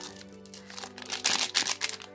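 Foil trading-card pack wrapper crinkling as it is handled, in a run of crackles in the second half, over quiet background music with a steady tone.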